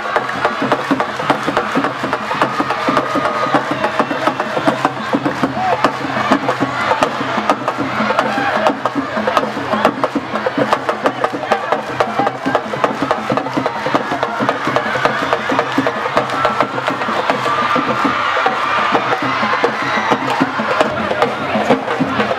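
Traditional Senegalese drumming: a fast, dense rhythm of drum strokes, with voices singing over it near the start and again toward the end.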